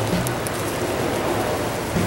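Steady, even hiss like rain, with faint background music beneath it.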